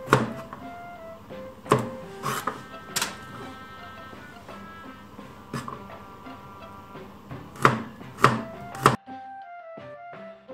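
Chef's knife cutting garlic cloves on a plastic cutting board: about eight sharp, irregularly spaced knocks as the blade strikes the board, over steady background music. The kitchen sound cuts out near the end, leaving only the music.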